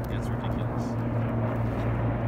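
An approaching helicopter gives a steady low drone of rotor and engines, with people talking underneath.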